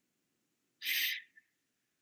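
A short hissing puff of noise, like a breath blown into a call participant's microphone, about a second in, trailing off in a faint thin whistle.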